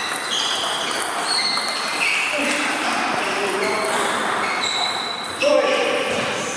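Table tennis play in a large hall: celluloid balls clicking off bats and tables at several tables, with many short high pings and squeaks scattered through, over a steady murmur of voices.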